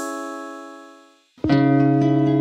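A held instrumental chord dies away to a moment of silence, then about a second and a half in, two classical guitars start plucking over a steady bass-guitar note.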